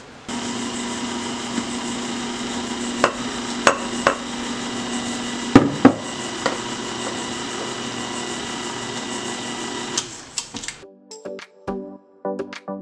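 KitchenAid Ultra Power stand mixer running steadily, its flat beater churning a dry, powdery bath bomb mixture in the steel bowl: a steady motor hum with a few sharp knocks in the middle. The motor cuts off near the end, and music follows.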